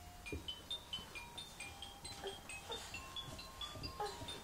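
A baby's musical toy playing a tinkly electronic tune of short high notes, about four or five a second, with a few soft knocks.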